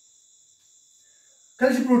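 Near silence with a faint, steady high-pitched whine, then a man's voice starts loudly near the end.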